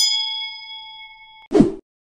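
Notification-bell sound effect from an animated subscribe button: a bright bell ding that rings and fades over about a second and a half, followed by a short thump, the loudest moment.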